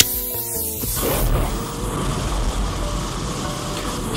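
A lighter clicks. Then, from about a second in, a steady rushing whoosh of flame with a low rumble sets in: aerosol bug spray set alight into a makeshift flamethrower.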